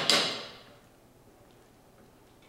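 A metal utensil knocks and scrapes in a skillet of mashed black beans. The clatter fades within about half a second and leaves quiet room tone.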